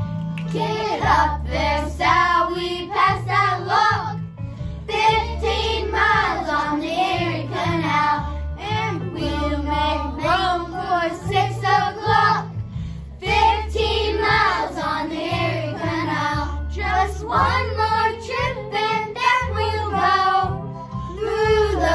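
Children's choir singing a song together over instrumental accompaniment with a moving bass line.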